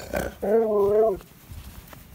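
A husky-malamute cross 'talking': a brief sound, then one wavering, drawn-out woo-like vocalisation lasting under a second.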